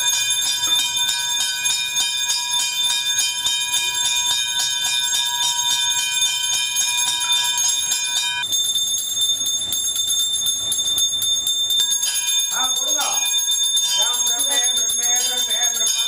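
A temple puja bell rung rapidly and continuously, giving a steady metallic ringing. About twelve seconds in, a voice chanting joins it.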